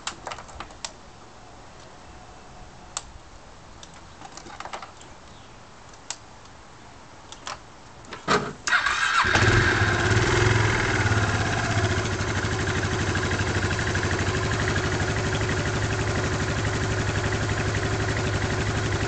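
Yamaha Majesty 400 scooter's fuel-injected single-cylinder engine being started: after several seconds of scattered faint clicks, a short crank about eight seconds in, it catches at once, revs briefly, then settles into a steady, quiet idle.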